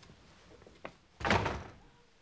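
A single dull thump that dies away within half a second, with a faint click just before it.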